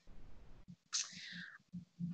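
Faint whispery breath or murmur from a person pausing to think, with one brief breathy sound about a second in, over quiet room tone.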